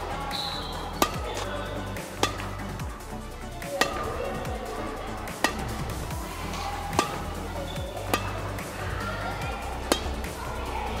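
Background music, with a badminton racket striking a shuttlecock seven times as a sharp crack every second or two.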